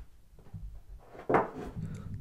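Handling noise from a Lenovo Chromebook Duet 3 tablet and its magnetic kickstand back cover on a wooden table, with one sharp clack about a second and a half in.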